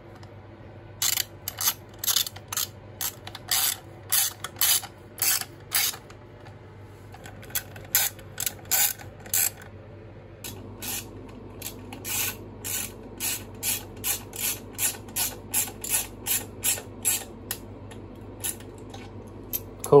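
Ratchet tool clicking in quick runs of about three clicks a second, with short pauses, as screws are driven in to fasten the recoil pull-start cover on a small pit bike engine.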